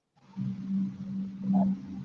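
A steady low hum, held at one pitch, with a faint hiss over it. It starts a moment in.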